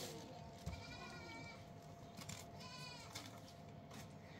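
Two faint goat bleats, a longer one about a second in and a shorter, wavering one near three seconds. A few light clicks sound between them.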